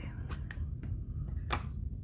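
A few short plastic clicks and taps as a StazOn ink pad's plastic case is opened and handled, the sharpest about one and a half seconds in, over a low steady hum.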